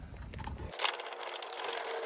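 Small electric motor of the trailer's tongue jack running with a steady whine, raising the hitch to take the pressure off the weight-distribution spring bars. It starts about a second in, after a few light metallic clicks.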